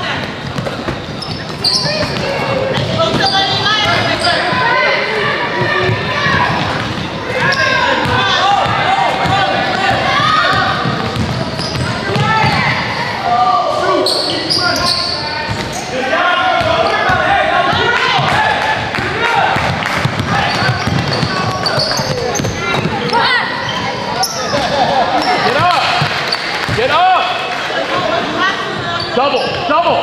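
A basketball bouncing on a hardwood gym floor during play, under a steady mix of players' and spectators' voices calling out, echoing in a large hall.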